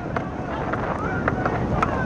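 Wind rumbling on the microphone, with faint distant shouting about a second in and a few sharp ticks scattered through.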